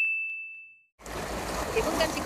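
A bell-like ding sound effect on a channel logo card: one high ringing tone fading over most of a second, then a cut to dead silence. About a second in, a steady rushing outdoor noise of wind and surf comes back.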